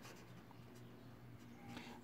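Faint scratching of a felt-tip pen writing on paper, over a low steady hum.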